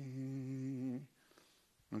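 A man's voice holding one long note at a level pitch, ending about a second in.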